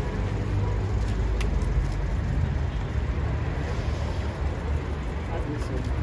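Steady low rumble of street traffic, with indistinct voices over it.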